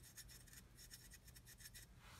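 Faint, rapid scratching and rubbing of a soft brush working weathering pastel powder over a plastic scale model; the sound is near silence.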